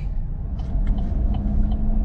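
Steady low rumble of a vehicle's engine and tyres heard from inside the cab while driving, with a faint steady hum and a few light ticks.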